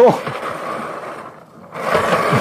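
Bowling ball spun by hand on a bowling spin-trainer base, rolling with a scraping whir, the practice motion for putting spin on the ball. The whir fades over the first second or so and picks up again near the end as the ball is spun once more.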